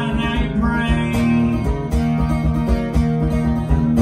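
Steel-string acoustic guitar strummed steadily, the chord ringing on between sung lines.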